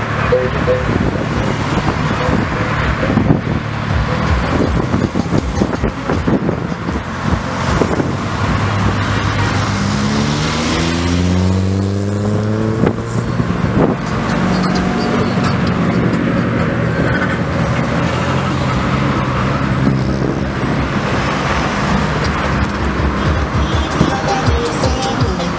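Lowered cars driving past one after another, engines running over road noise. About ten seconds in, one engine's note rises as it speeds up past.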